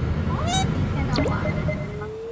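Low rumble of a moving van's cabin, with short edited comic sound effects and background music laid over it; a steady high tone is held through the second half.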